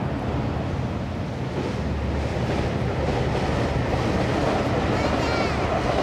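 A train on the JR Dosan Line rumbling past across the gorge, growing louder over the last few seconds with a brief high squeal near the end, over the steady low drone of the sightseeing boat.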